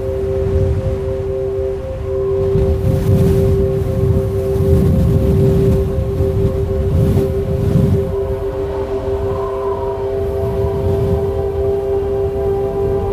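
Subliminal frequency track: ambient music of held steady tones, with a low rushing wash that swells and fades every couple of seconds, like surf.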